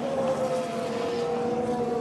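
A Formula 1 car's 1.6-litre V6 turbo-hybrid engine passing a trackside microphone at high revs: one steady engine note that falls slowly in pitch.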